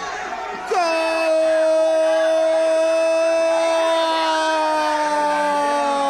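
Football radio commentator's drawn-out goal cry, one long held 'gooool' starting under a second in and sinking slowly in pitch, calling a penalty just scored.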